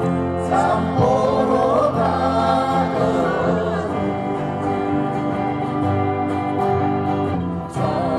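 Live acoustic guitar and a man's singing voice, sung into a microphone and amplified through stage speakers.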